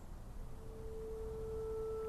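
Soft film underscore: a single steady, pure-sounding held note swells in about half a second in, and two fainter higher notes join it partway through, over a low background rumble.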